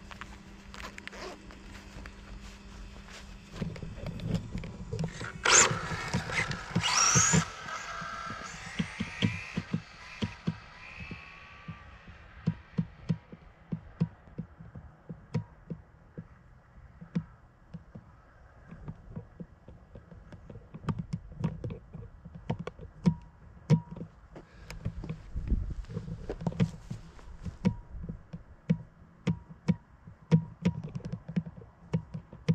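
Radio-controlled Tamiya TT02 electric touring car setting off on a full-speed run: electric motor whine and tyre noise, loudest about five to seven seconds in, then falling in pitch and fading as the car goes away down the road. After that, scattered sharp clicks and taps.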